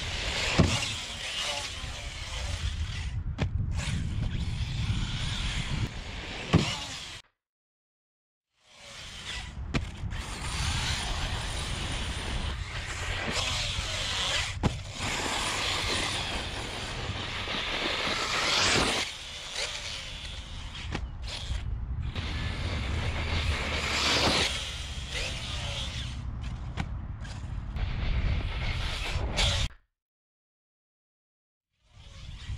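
Arrma Kraton 8S RC monster truck driven flat out on dirt: its brushless motor whine rises and falls with the throttle over heavy wind rumble on the microphone. The sound drops out briefly about seven seconds in.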